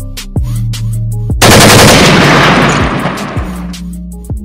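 A burst of automatic gunfire, a loud rapid rattle, about a second and a half in, fading away over about two seconds. It plays over a hip hop beat with deep sustained bass notes.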